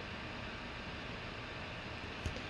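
Steady low background hiss of room tone, even throughout, with no distinct events.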